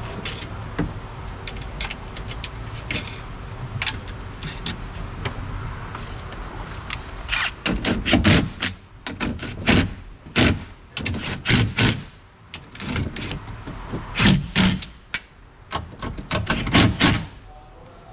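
Cordless impact wrench run in several short bursts, driving nuts onto the window regulator and motor mounting studs inside a car door, after about seven seconds of quieter hand work threading the nuts.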